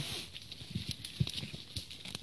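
A goat nibbling and chewing bracket fungus off a fallen log: faint, irregular crunching clicks.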